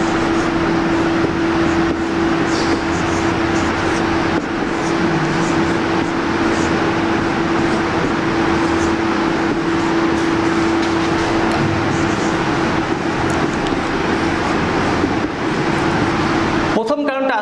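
A steady, loud hum with one constant tone over a broad rushing noise, mechanical in kind, throughout. Faint short squeaks of a marker pen writing on a whiteboard come through it now and then.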